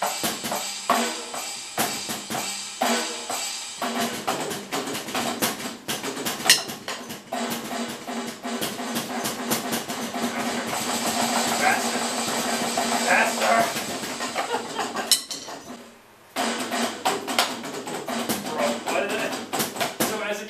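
Electronic drum kit played in a running beat of snare, bass drum and cymbal hits, with a short break about three-quarters of the way through before the drumming picks up again.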